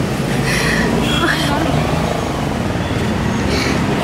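A woman crying aloud in distress, her voice breaking into short wavering sobs, with other voices close by.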